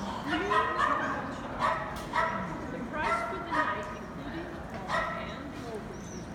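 A dog barking repeatedly in short, high barks, with a pause of about a second partway through.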